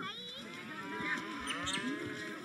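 Livestock calling: several overlapping drawn-out calls at different pitches.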